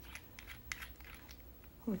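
A glass nail polish bottle being handled and opened, with a scattering of faint small clicks and scrapes from the plastic cap and glass.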